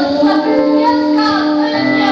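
Women singing a gospel worship song into microphones over long held accompaniment chords.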